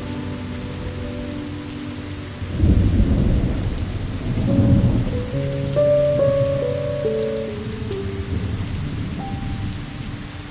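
Steady rain with a roll of thunder that starts suddenly about two and a half seconds in and rumbles for a couple of seconds, over soft sustained music notes that step downward after the thunder.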